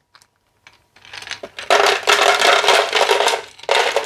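Ice cubes poured from a bowl into a blender jar, clattering and clinking against the jar and each other. The clatter starts about a second in and stays loud to the end.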